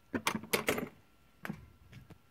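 Metal parts of a disassembled OS GT-15 gas engine clicking and clinking as they are handled in a cardboard box: a quick run of light clicks in the first second, then one more click about a second and a half in.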